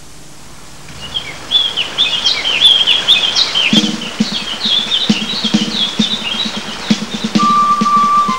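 A flock of birds chirping, many quick high twittering calls overlapping. About halfway through a low rhythmic pulse comes in under them, and a steady held tone enters near the end as music begins.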